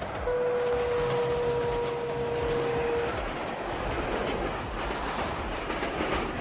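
A city tram passing close by, its wheels running on the rails as a steady noise. A horn sounds one long steady note for about three seconds near the start.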